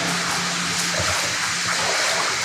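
Steady hiss of water running in a concrete storm-drain tunnel, with a low steady hum underneath.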